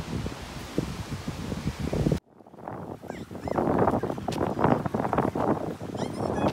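Outdoor wind on the microphone with rustling, cut off abruptly about two seconds in. Background music with a beat then fades up and carries on.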